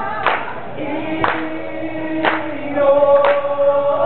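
A group of people singing together in long held notes, with a sharp hand clap about once a second keeping time.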